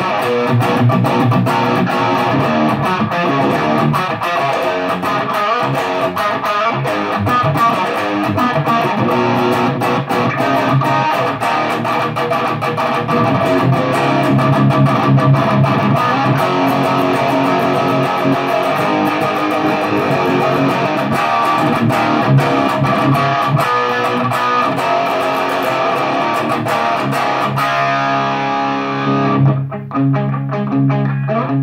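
Les Paul-style electric guitar played through a Brunetti 059 Red amp head: overdriven riffs and chords, settling into held, ringing notes near the end.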